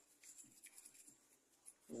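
Faint soft brushing: a small bristle brush swept over a die-cast toy car to dust it, heard as light scratchy flicks against near silence.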